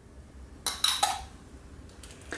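Metal spoon clinking against a glass jar of tomato sauce, three quick ringing clinks a little under a second in.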